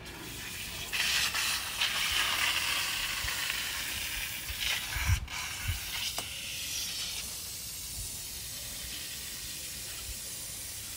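Water running from a garden hose, flushing out a wild boar's intestines: a steady hiss and splash that starts about a second in and is loudest over the next couple of seconds, then settles lower, with a few soft knocks about halfway.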